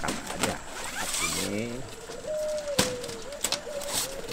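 Aluminium cage divider panel being set into its slot in a wire-mesh bird cage, knocking twice against the metal frame. A long, nearly steady tone runs under it from about halfway through.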